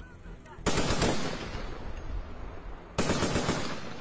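Machine gun firing two short bursts, the first about a second in and the second about three seconds in, each a rapid string of shots trailing off in echo.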